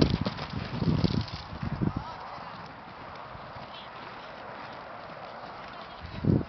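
Hoofbeats of a horse cantering on sand footing: a run of dull thuds for about the first two seconds as it passes close, then they fade into faint background.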